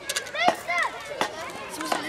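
A few sharp knocks of a concrete paving tile against the pavement as it is handled, mixed with children's high voices.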